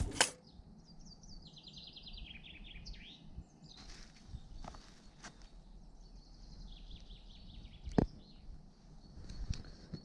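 A songbird singing: a descending trill of rapid high notes lasting about three seconds, then a softer second phrase about seven seconds in. Faint rustling about four seconds in and a sharp click about eight seconds in.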